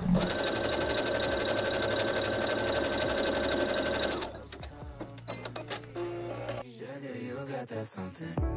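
Electric sewing machine stitching at a fast, steady rate for about four seconds, mending a popped seam on a dress, then stopping. Lighter clicks follow, and background music comes in near the end.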